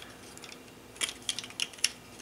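Light plastic clicks as a white plastic egg-yolk separator cup is fitted onto a handheld egg cracker, a quick run of about five small clicks in the second half.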